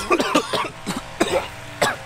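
A man gagging and coughing in several short, dry retches, the sign of nausea.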